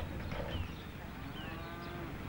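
A cow mooing faintly in the background: one drawn-out call of about a second in the second half.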